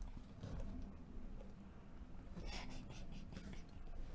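Faint rustling with a few light scratchy sounds over a low room hum.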